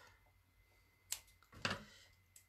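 Faint handling sounds of craft materials: a single sharp click about a second in, then a short rustle, as a roll of foam tape is set down on the craft mat.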